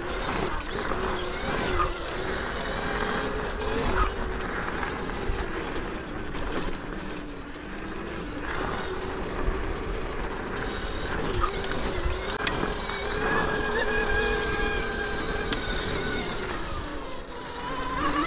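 Throne Srpnt 72V electric dirt bike riding singletrack: the electric motor's whine wavers in pitch as speed changes, over the noise of tyres on dirt, with a couple of sharp clicks later on.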